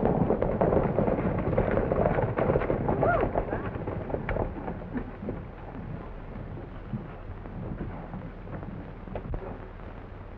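Hoofbeats of a group of horses ridden in together on a dirt street, a dense rumble of many hooves that dies down after about four seconds as they pull up.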